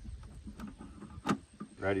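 Small clicks and light handling noise from a Premier1 solar fence energizer as small nuts are unscrewed from it by hand, with one sharper click a little past a second in.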